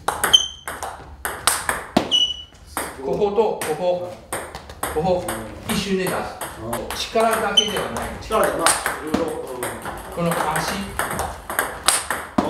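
Table tennis rally: quick sharp clicks of the plastic ball striking the rackets and the table, three of them ringing with a short high ping, as forehand drives with a sticky (tacky) rubber are hit against chopped backspin balls.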